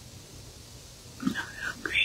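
A person whispering, starting a little over a second in.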